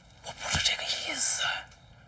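Hushed, whispered speech.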